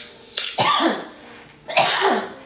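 A person's voice in two short, loud outbursts, about half a second in and again near the end, each with a sudden start and a falling pitch.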